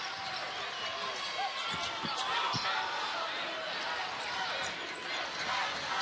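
Broadcast sound of a college basketball game: steady arena crowd noise, with a few knocks of the ball bouncing on the hardwood court.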